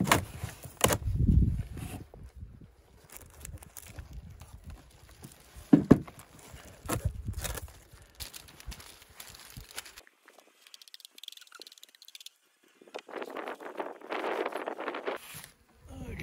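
Beehive parts being handled: a plastic top feeder and covers lifted off the hive, with knocks, clicks and rustling, the sharpest click about six seconds in and a stretch of rustling near the end.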